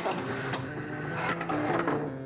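Pinball machine being played: rapid mechanical clicking and clattering of flippers and relays, over several steady held tones.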